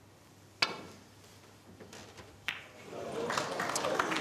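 Snooker balls clicking: a sharp click about half a second in as the cue ball is struck, and a second, softer click about two seconds later as the cue ball meets the yellow. Audience noise rises near the end.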